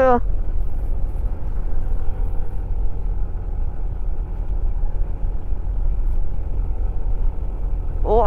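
Yamaha NMAX scooter's single-cylinder engine running steadily under load on a steep uphill climb, with a heavy, steady low rumble of wind and road noise.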